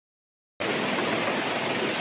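A steady, even hiss that starts abruptly about half a second in after dead silence.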